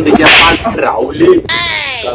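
A man's voice in a comic bit: a short, sharp swishing burst, then a few words, and a high cry that rises and falls near the end.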